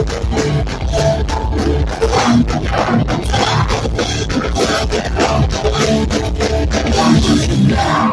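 Live hardcore punk band playing loud: electric guitars, bass and drum kit, with a vocalist shouting into the microphone.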